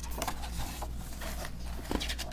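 A picture book's paper page being turned by hand: a string of short rustles and scrapes, with a stronger one near the end.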